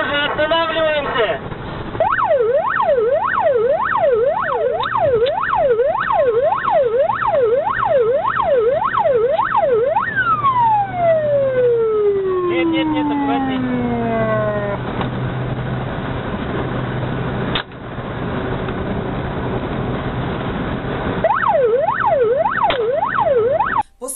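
Police car siren sweeping rapidly up and down, about one and a half sweeps a second, over a low engine drone. It then winds down in one long falling glide, and the fast sweeps start again near the end. A single sharp knock comes about two-thirds of the way through.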